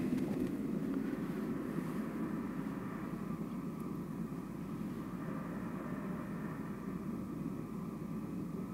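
Soundtrack of a short experimental documentary film played over a lecture hall's speakers: a steady low rumbling drone that eases off slightly over the first few seconds, then holds.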